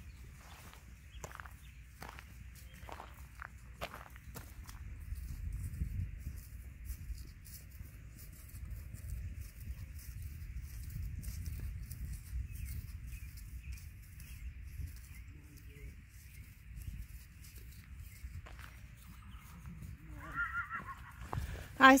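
Horses in an open field, with a low steady rumble of wind on the microphone and a few soft knocks in the first few seconds. Near the end a horse whinnies, a high wavering call.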